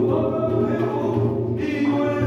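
Binari singing: the Korean ritual blessing chant of a gosa rite, sung in long held notes.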